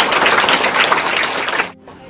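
A group of schoolchildren applauding: many hands clapping in a dense patter that cuts off suddenly near the end.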